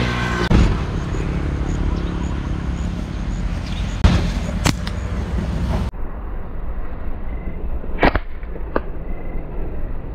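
Hunting slingshot shots: a few sharp snaps in two pairs about two-thirds of a second apart, over a steady rush of outdoor noise. The background noise drops abruptly about six seconds in.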